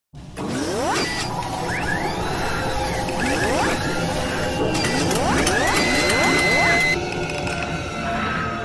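Logo-intro sound design of synthetic mechanical servo whirs: several rising whines in quick groups over a steady machine-like bed, with clicking and a held high whine that cuts off about seven seconds in.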